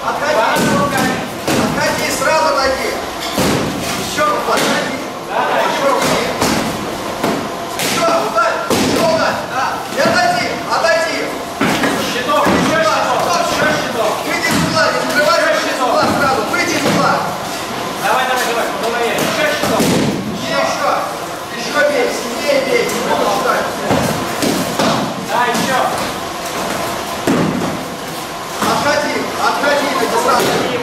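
Foam chanbara swords and shields clashing, a run of irregular thuds and slams as blows land on the round shields and padded gambesons, with voices throughout.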